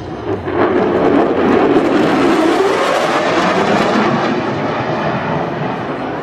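Loud jet noise from an F-22 Raptor's twin afterburning turbofan engines as it passes low and fast. The sound swells about half a second in, holds strongly, then eases off gradually toward the end.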